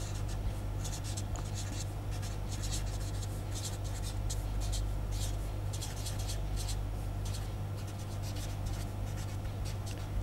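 Marker pen writing on paper: a run of short, irregular scratching strokes as words are written across the page, over a steady low electrical hum.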